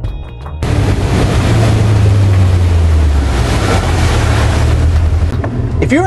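Brief music, then a motorboat under way: a steady low engine rumble under loud rushing wind and water noise, ending just before the close.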